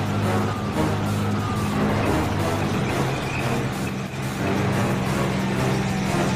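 Engine of an M60A3 Patton tank running as it drives, mixed under background music.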